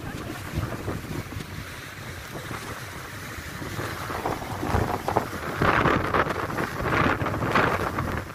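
Strong wind buffeting the microphone over heavy storm surf, the surging wave noise growing louder in the second half.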